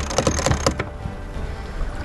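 Sailboat sheet winch being cranked by its handle, the pawls clicking in a fast run for under a second, then stopping, over low wind and water noise.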